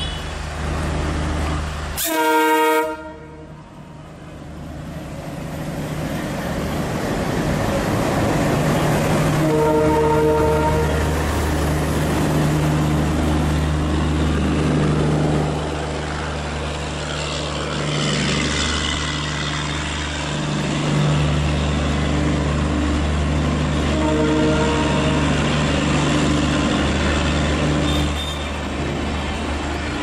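Twin Alco WDM-3D diesel locomotives pulling away under power, their engines giving a steady low chugging drone, with air-horn blasts about two seconds in and again around the middle and near the end. Later the rumble of passing coaches joins in.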